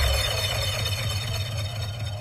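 Breakdown in a techno DJ mix: with no kick drum, a high sustained synth texture of several steady tones slowly fades.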